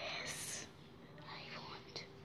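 A soft whispered voice: a breathy hiss, then a short high gliding vocal sound.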